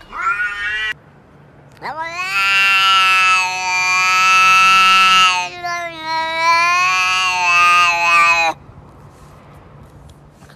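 A cat gives a short meow that rises in pitch. After a pause, two long, loud, drawn-out yowls follow almost back to back and cut off suddenly.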